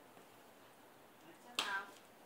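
A single short, sharp vocal sound about a second and a half in, with a click-like start and a brief pitched cry lasting a fraction of a second.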